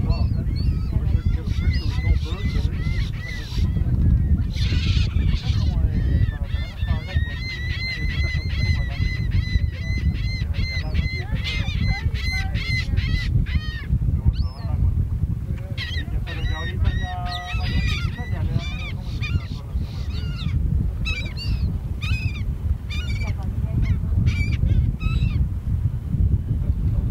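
Gulls calling over and over, often in quick runs of short, laughing calls, over a steady low rumble.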